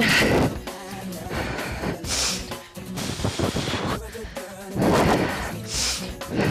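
Background workout music with heavy breaths blown into a close microphone: three loud exhales, at the start, about two seconds in and near the end.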